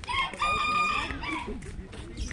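A rooster crowing once, a single held call lasting about a second.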